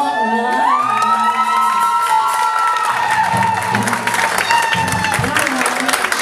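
A woman singing a long held note into a microphone over live backing music at the end of a song. Through the second half the audience cheers and applauds.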